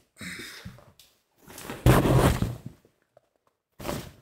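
Cotton quilt top being gathered and handled, the fabric rustling in two stretches, with a dull thump about two seconds in.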